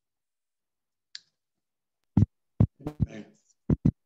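A short hiss, then about five sharp clicks or knocks, spread over the second half, with a brief fragment of voice among them near the middle.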